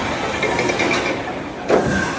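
Amusement-park ride machinery running as its suspended seats swing past: a steady mechanical rumble, with a sudden loud rush about 1.7 seconds in.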